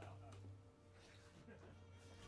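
Near silence: a steady low electrical hum from the amplifiers, with faint, indistinct voices in the small room.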